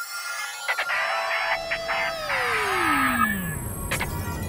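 Music sting for a TV show's title graphics: a held tone with many lines above it, sliding steeply down in pitch over about a second and a half. A sharp hit lands near the end.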